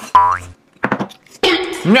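A short comic "boing" sound effect, a single quick tone that rises in pitch, near the start.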